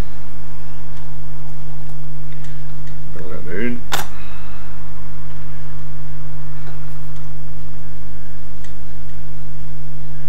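A steady low electrical hum under the recording, with a single sharp tap about four seconds in as a hand tool is set down on the plastic cutting mat.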